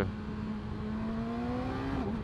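2020 Yamaha YZF-R6's 600 cc inline-four engine heard from the saddle, its note rising smoothly and steadily as the bike accelerates.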